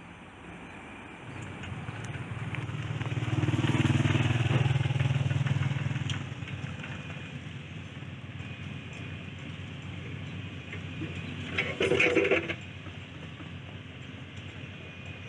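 A motor vehicle drives past close by: its engine grows louder from about a second in, peaks around four to five seconds and fades by six seconds. About twelve seconds in there is a short, louder burst of sound over the steady outdoor background.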